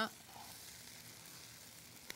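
Faint, steady hiss.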